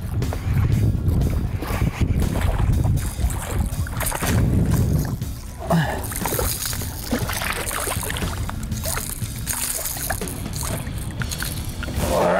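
A hooked bass splashing at the water's surface as it is reeled in to the boat, under background music, with wind rumbling on the microphone for the first few seconds.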